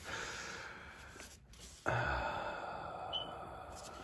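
A man sighing: two breathy exhales, the second starting suddenly just before halfway through and stronger, then trailing off slowly.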